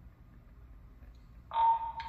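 Quiet room tone, then about one and a half seconds in a police two-way radio on the officer's shoulder gives a sudden loud steady tone lasting about half a second as a radio transmission comes through.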